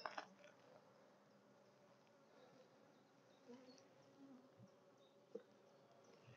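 Faint, steady hum of a honeybee colony in an opened top bar hive, with a light click at the start and another about five seconds in.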